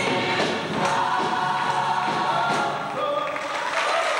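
Gospel choir singing together.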